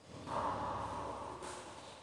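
A person's short breath, an exhale lasting about a second.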